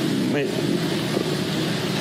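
A man says one short word, then pauses over a steady, even background noise.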